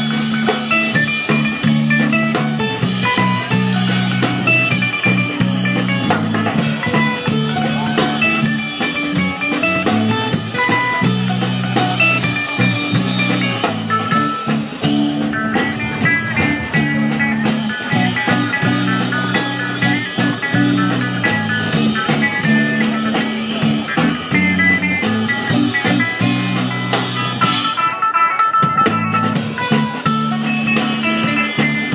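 A live rock band playing amplified through stage speakers: electric guitar lines over bass and a drum kit. Near the end the drums drop out briefly under a held guitar note.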